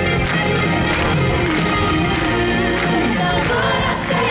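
Live pop ballad played by a band and string orchestra over the concert loudspeakers, with a woman's voice singing and crowd noise mixed in, picked up from within the audience.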